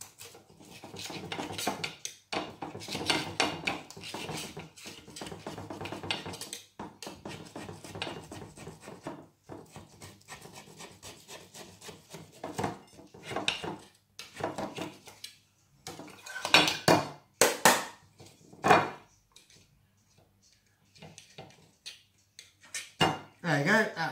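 A knife scraping around the inside edge of a round cake tin to loosen a baked sponge, with irregular metal scraping and clinks. A few louder clinks and knocks come about two-thirds of the way in.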